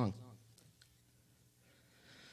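A speaking voice trails off at the very start, then a quiet pause broken by a couple of faint clicks, likely small handling noises from the performer's ukulele.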